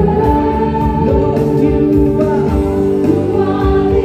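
Live worship band music: keyboards holding sustained chords under several voices singing a congregational worship chorus.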